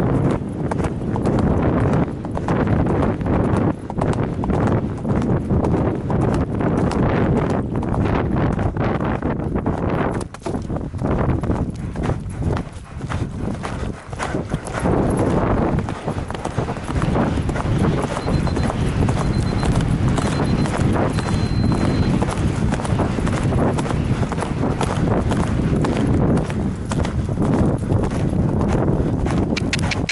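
A horse galloping cross-country over grass, its hoofbeats heard close up through a rider's helmet camera, with wind rushing over the microphone.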